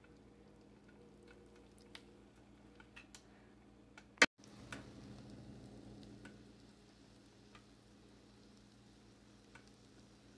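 Faint sizzling with sparse crackles as ramen-noodle pancake batter cooks in melted butter in a hot pan. A sharp click comes about four seconds in, after which the sizzle is a little louder for a couple of seconds.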